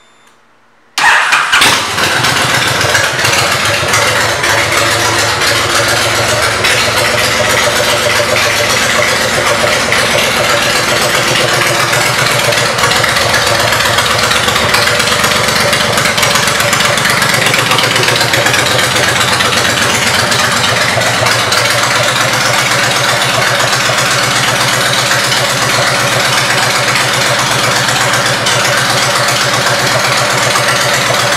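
Honda Fury 1300's V-twin, fitted with aftermarket pipes, cranked and starting about a second in. It then settles into a steady idle that drops slightly lower about two-thirds of the way through.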